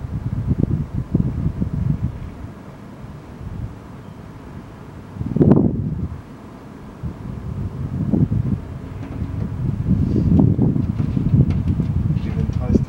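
Wind buffeting the microphone in uneven gusts, a low rumbling rush that swells and fades, loudest about five and a half seconds in.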